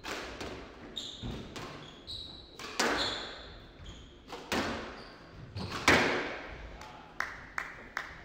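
Squash rally: the ball cracking off rackets and the walls every second or so, each hit ringing around the court, with the loudest strike about six seconds in. Short high squeaks of court shoes on the wooden floor come between the shots.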